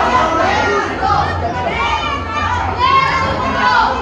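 Crowd of wrestling spectators shouting and yelling, many raised voices overlapping.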